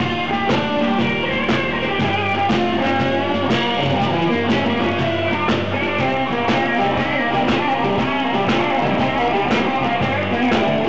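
Live rock band playing an instrumental passage with no vocals: electric guitar (a PRS McCarty through a Fender Supersonic combo) over drums, bass and keyboard, with a steady drum beat.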